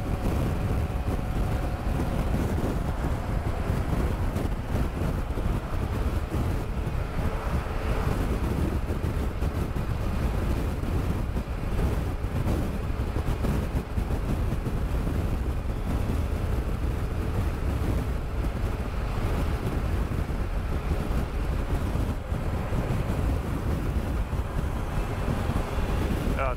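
Steady wind noise rushing over the microphone of a BMW F800 GS Adventure motorcycle cruising at road speed, with its parallel-twin engine running faintly underneath.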